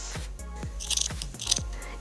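Small scissors snipping through a doubled-over t-shirt sleeve hem, a few short crisp cuts, over soft background music.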